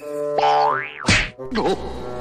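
Cartoon comedy sound effects: a springy boing and rising, wobbling whistle-like glides, with a sharp hit about a second in. They play over brass-led background music.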